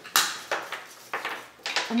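Cardstock craft pieces being handled on the work surface: four or so sharp taps and rustles, the first and loudest about a quarter second in.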